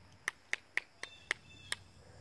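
A run of six short, sharp clicks, about four a second and slightly uneven, over quiet outdoor background.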